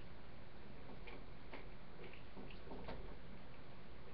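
Faint, irregular light clicks and taps over a low steady hum.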